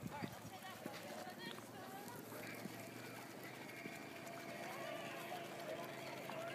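Faint voices talking in the background, too low to make out words, with a few light clicks.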